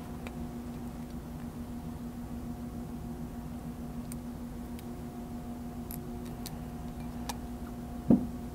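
Steady low hum of room tone, with a few faint, sharp clicks from a wire crimping tool and wire ends being handled while heat-shrink butt connectors are crimped onto wires.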